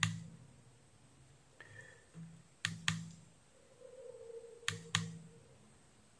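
Push button on a Kaiweets KM601 digital multimeter clicking as it is pressed to step the manual range. There is one click at the start, then two quick double clicks, press and release, about two seconds apart.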